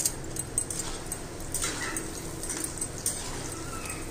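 Besan pieces sizzling in hot oil in an iron kadhai as they are stirred and turned with a metal spatula, with a faint steady whine underneath.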